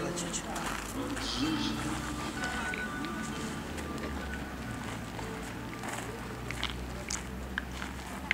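Several people talking indistinctly in the background over a low steady rumble, with a few faint sharp clicks near the end.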